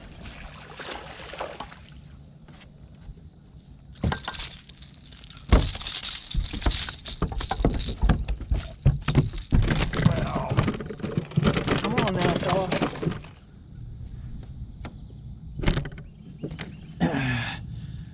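A hooked spotted bass splashing and thrashing at the surface beside a boat as it is reeled in and landed, with sharp knocks and a long spell of splashing and handling noise in the middle.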